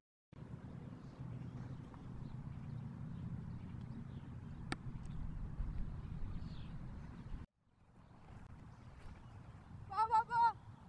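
Outdoor field ambience: a low rumble of wind on the microphone, with one sharp crack about halfway through. The sound drops out briefly just after the start and again about three quarters of the way in.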